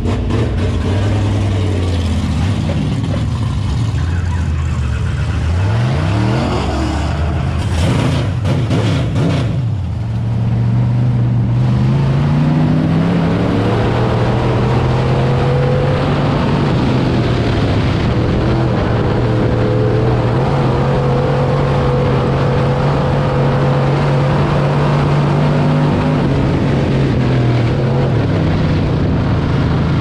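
Dirt late model race car's V8 engine heard from inside the cockpit while racing. Its pitch rises and falls over the first ten seconds as the throttle comes off and back on, then climbs and holds high and steady at speed.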